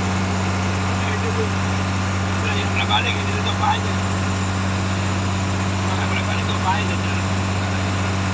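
Fishing boat's engine running under way with a steady low drone. Faint voices come through around three seconds in and again near seven.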